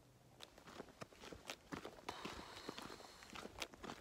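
A hiker's footsteps, faint and irregular, with rustling of clothing and backpack straps as he walks with a phone in hand; they start after a brief near-silent moment at the beginning.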